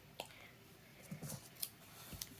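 A few faint, sharp clicks from a pair of steel-bladed, orange-handled scissors being picked up and handled, the blades clicking shut.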